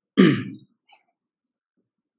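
A person clearing their throat once, briefly.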